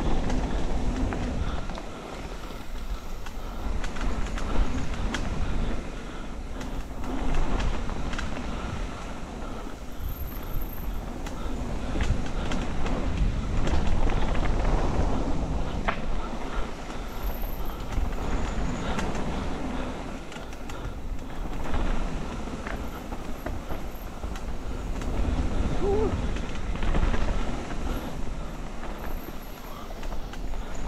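Mountain bike running fast down a dirt forest trail: a continuous rumble of tyres on dirt, with scattered clicks and knocks as the bike rattles over bumps. Wind noise on the microphone swells and falls every few seconds with speed.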